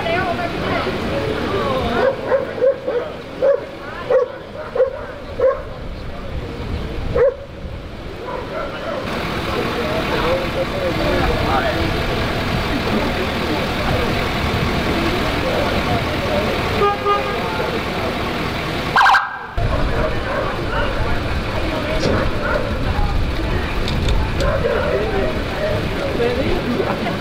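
A dog barks about seven times in the first several seconds, over a steady background of people talking and vehicle engines running. Later comes a short, loud tone about three-quarters of the way through.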